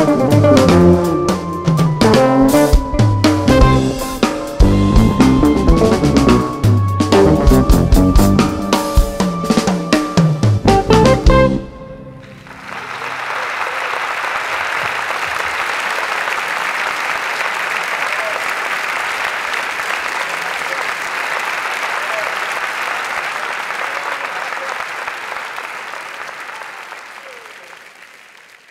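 Live jazz-fusion band with electric guitar, electric bass, drum kit and keyboards playing loudly, then stopping sharply on a final hit about eleven seconds in. A concert audience then applauds steadily, fading out near the end.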